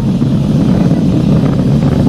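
Falcon 9 first stage's Merlin 1D rocket engines heard from far below as a steady low rumble, with the stage throttled back up to full thrust just after max-Q.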